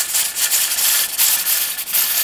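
Weighted pressure regulator on an All American pressure canner jiggling on its vent pipe, steam hissing out in quick pulses. The jiggle is the sign that the canner has come up to its set pressure of 15 pounds.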